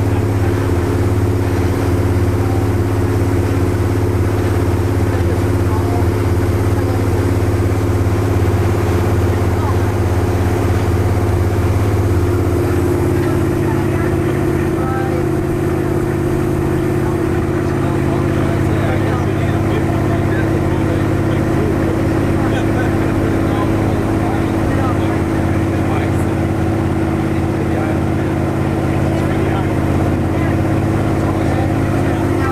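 Motorboat engine running steadily under way, a loud, even drone with several low pitched tones over the rush of wind and water. The pitch shifts once, about twelve seconds in.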